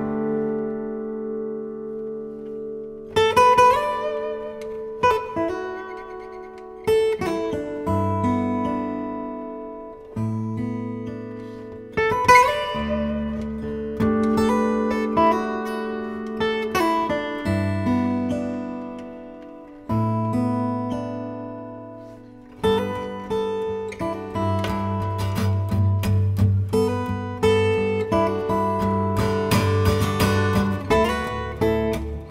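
A Maton steel-string acoustic guitar played solo fingerstyle in a slow instrumental piece. Chords and melody notes are struck every few seconds over low bass notes and left to ring out and fade between strikes.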